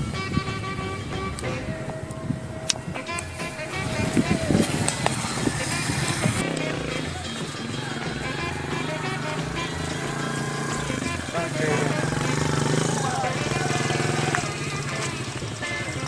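Men's voices and background music, with a motorcycle engine running.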